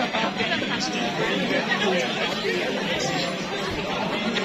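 Crowd chatter: many people talking at once, their voices overlapping with no single speaker standing out.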